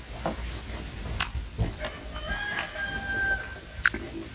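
A rooster crowing once, a single pitched call of a little over a second starting about halfway through. Underneath are a few short, sharp clicks and smacks of someone eating with their fingers.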